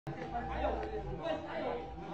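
Indistinct voices of several people talking at once, with a steady hum underneath.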